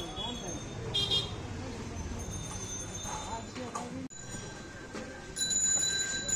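Busy street-market ambience: a steady murmur of voices and passing traffic, with a brief high toot about a second in. It breaks off abruptly a little after the middle, then picks up again with a steady high tone near the end.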